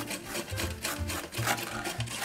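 Carrot being grated on a stainless steel box grater, a run of rasping strokes, mixed with a chef's knife slicing through red cabbage onto a wooden cutting board.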